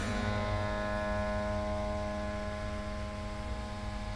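One note sounded on the exposed strings of a dismantled piano, ringing on with many overtones and slowly dying away, over a low steady hum.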